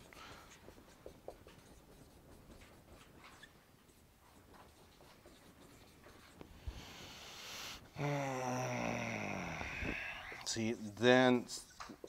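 Faint scratching strokes of a dry-erase marker writing on a whiteboard, followed from about two-thirds of the way in by a man's voice muttering to himself.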